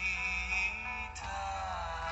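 Song with a male lead vocal playing from a radio broadcast, with a held, wavering note in the first second followed by gliding notes.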